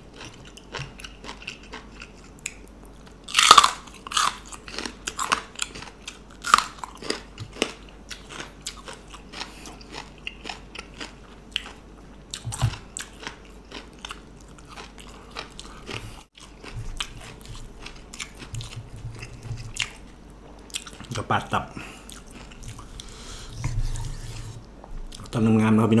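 A person eating raw beef liver with raw bitter gourd close to the microphone: bites, crunches and wet chewing sounds spread through, the loudest crunch about three and a half seconds in. A few short low hums come between mouthfuls in the second half.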